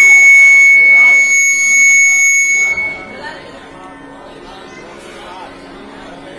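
Loud, steady high-pitched whistle of PA microphone feedback that cuts off suddenly about three seconds in. A low steady hum and faint voices follow.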